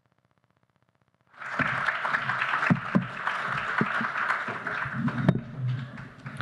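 Audience applauding, with the clapping starting about a second and a half in after a silent gap.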